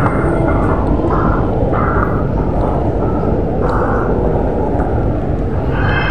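Loud, steady rumbling noise from a handheld phone microphone carried at a brisk walk.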